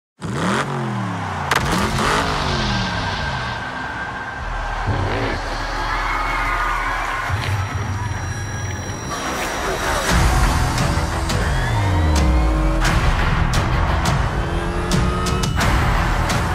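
Race car engines passing by at speed, their pitch dropping steeply as each goes past, several times over, laid over dramatic trailer music.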